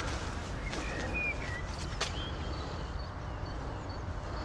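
Quiet outdoor ambience with a few faint bird chirps: a short rising-and-falling call about a second in, then brief high notes scattered through the rest.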